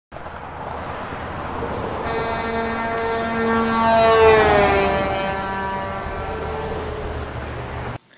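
Intro sound effect of a vehicle driving past while sounding its horn, over a steady low rumble. The horn grows louder to a peak about four seconds in, then drops in pitch and fades as the vehicle goes by; the sound cuts off abruptly at the end.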